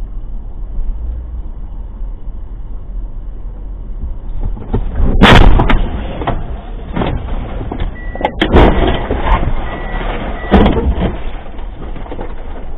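Car crash recorded by a dashcam inside the car. A steady low road-and-engine rumble gives way about five seconds in to a loud impact, followed by rough scraping and jolting noise with further hard bangs, the loudest at about eight and a half and ten and a half seconds. A faint high tone comes and goes between the later bangs.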